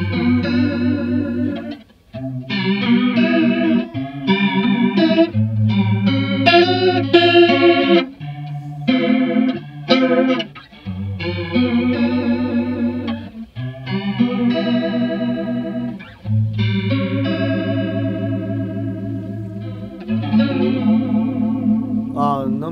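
Electric guitar chords played through two chorus pedals at once, a Mooer Ensemble King feeding an SSAudio Water World analog chorus. The chords are struck every two to three seconds and left to ring. The stacked modulation makes the notes waver and warp so much that the pitch sounds slightly off.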